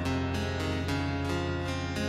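Acoustic guitar playing a steady run of plucked notes, about four a second, in an acoustic band performance.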